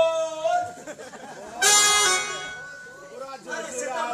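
Stage actors' voices carried over a public-address system, with a sudden loud, bright cry about one and a half seconds in that fades away over about a second.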